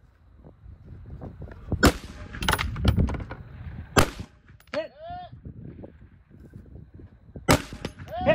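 Rifle shots from a scoped AR-style rifle: three loud, sharp reports a couple of seconds apart, with fainter reports between the first two.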